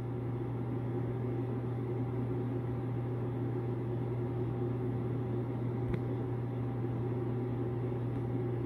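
A steady low hum of background machine-like noise, even throughout, with one faint click about six seconds in.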